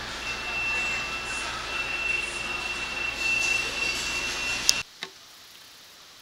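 Convenience store ambience: an even background rush with a steady high-pitched tone held for about four and a half seconds. A sharp click follows, and the sound then drops suddenly to quiet room tone for the last second.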